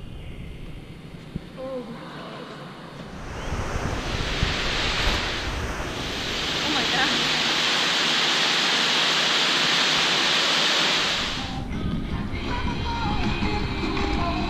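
Loud steady rush of falling water in an indoor exhibit hall, starting about three seconds in and cutting off near the end, with faint music before and after it.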